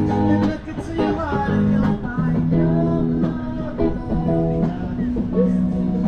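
Live band music: electric guitar playing over a drum kit.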